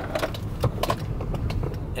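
A car's low steady rumble with several short clicks and knocks scattered through it.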